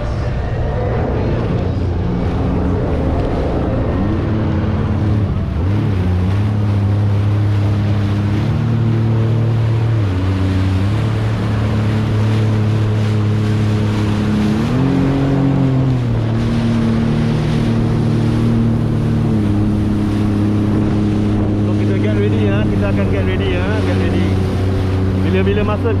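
Sea-Doo jet ski engine running under way, its pitch rising and dipping a few times with the throttle, over the rush of water and wind.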